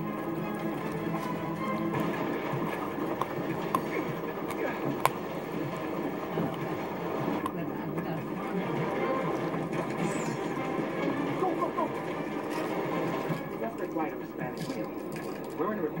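Television audio with voices and some music running steadily in the room, over which a dog gnaws at a chew, with a few sharp clicks of teeth on the chew, the loudest about five seconds in.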